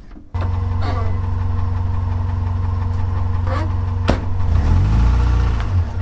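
An SUV's engine running steadily, then revving up and back down near the end as the vehicle pulls away, with a few sharp clicks over it.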